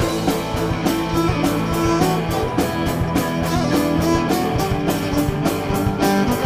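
Live folk-rock band playing an instrumental passage: strummed guitars and held notes over a steady drum-kit beat.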